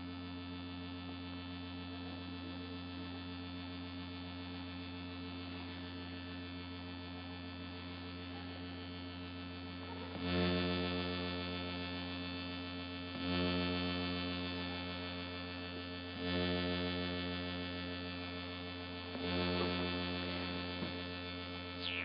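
Patchable analog synthesizer playing a steady, low electronic drone of several held tones. From about halfway through, a louder note swells in every three seconds or so, four times, each fading slowly.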